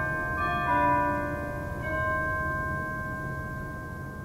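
Instrumental music: ringing, bell-like chords of long-held notes, with new notes entering a few times and the whole slowly dying away.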